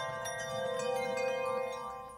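Intro sting of ringing chime tones: a held bell-like chord with a few light strikes, fading out near the end.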